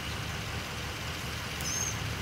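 Steady low rumble of a vehicle engine running at a distance, with a short high bird chirp near the end.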